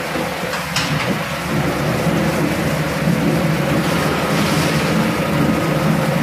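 Electric potato-processing machinery running steadily: a constant motor hum under a rushing, churning noise, with a couple of sharp knocks about a second in.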